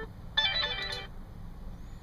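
Short electronic-sounding music snippet from a music player while tracks are being skipped: a bright cluster of tones lasting under a second that cuts off abruptly.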